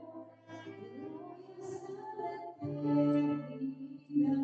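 Slow live music with long held notes over a steady bass line, from a keyboard player and a saxophonist.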